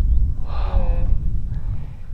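Wind buffeting the camera microphone in a steady low rumble, with a short, slightly falling voice-like sound about half a second in.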